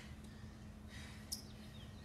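Quiet outdoor background: a faint steady hum and low rumble, with one brief high chirp a little past halfway.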